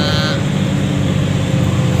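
Truck engine running steadily under way, a low drone heard from inside the cab.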